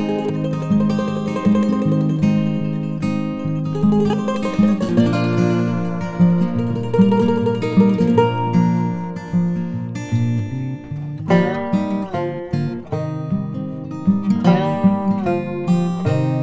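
Background music played on acoustic guitar: a continuous run of plucked notes.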